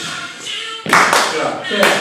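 Pop song with singing for a dance challenge, broken by sharp claps: a quick burst of claps about a second in and one more near the end.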